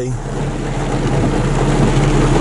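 Pickup truck engine running steadily, heard from inside the cab while driving slowly, with an even hiss of rain on the windshield and roof.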